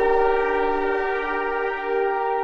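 Korg Minilogue polyphonic analog synthesizer holding a chord of several notes: a steady, horn-like sustained tone with a slight wavering.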